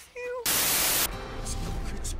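A loud half-second burst of static hiss, starting about half a second in and cutting off abruptly, used as a transition between clips. A brief voice comes just before it, and music begins right after.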